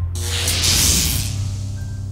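A hissing whoosh, a sci-fi teleport sound effect, rises and fades over about the first second. It plays over background music with low held notes.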